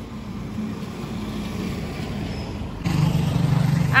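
Motorcycle engine running on the road, a steady low hum that grows slowly louder, then jumps to a louder, pulsing engine sound about three seconds in.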